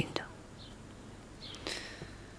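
The last syllable of a woman's spoken line, then a quiet pause with faint room tone and a soft breathy sound near the end.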